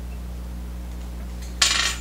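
A small metal fly-tying tool clinks once against a hard surface about one and a half seconds in, a short bright metallic clink over a steady low hum.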